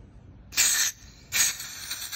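Two short hissing spurts of liquid butane escaping around a torch's refill valve as the canister nozzle is pressed in; the second trails off more slowly. The torch is already full, so the excess gas spits out and evaporates, the sign it is completely refilled.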